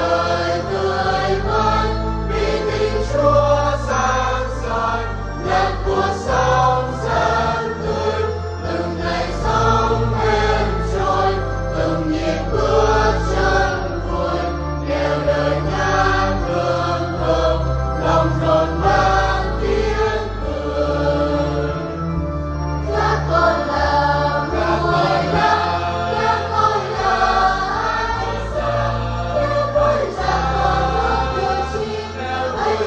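Church choir singing a Vietnamese hymn in parts over instrumental accompaniment with sustained low bass notes. The voices break briefly about 22 seconds in.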